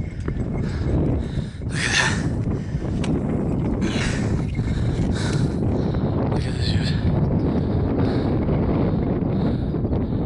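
Wind buffeting the microphone, a steady low rumble, with a few brief scuffing sounds about two, four and five seconds in.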